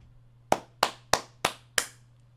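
A person clapping their hands five times in a slow, even rhythm, about three claps a second.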